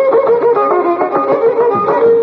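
Carnatic violin playing quick melodic phrases in raga Kambhoji, with mridangam strokes accompanying.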